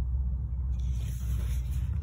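A paper picture-book page being turned, a soft rustling hiss starting a little under a second in, over a steady low rumble.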